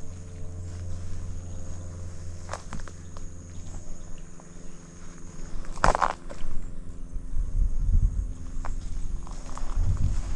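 Slow, careful footsteps through grass and brush, with leaves and twigs rustling and crackling against a leafy ghillie suit. There is a louder crunch about six seconds in, and a low rumble runs underneath.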